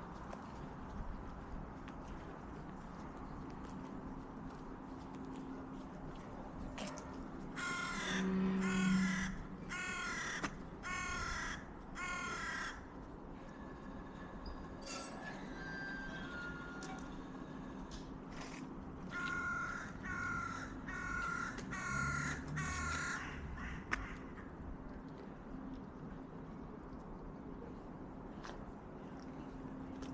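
A crow cawing in two bouts of about five caws each, the first about eight seconds in and the second about nineteen seconds in, over a faint steady hum.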